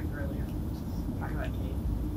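Steady low rumble with a constant hum under it, with a few faint bits of voices.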